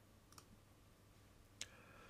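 Near silence with two faint computer mouse clicks, one about a third of a second in and a sharper one near the end.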